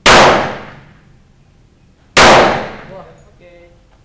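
Two shots from a .45 pistol about two seconds apart, each a sharp, very loud report with a long fading tail echoing off the range's walls.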